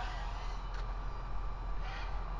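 Steady background noise with a low hum and no distinct events.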